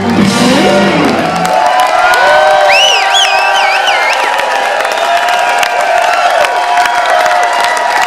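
Live blues band ending a song: the bass and drums stop about a second and a half in, leaving electric guitars holding sustained notes that bend up and down. The crowd cheers, with a high wavering whoop in the middle.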